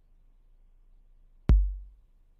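A single electronic kick drum note from Song Maker's drum kit, sounded as a new kick note is clicked into the beat. It is one low, sharp hit about one and a half seconds in that dies away over half a second.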